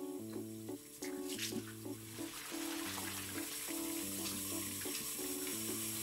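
Background music with a simple melody and bass line, over a bathroom faucet running in a steady stream into a sink.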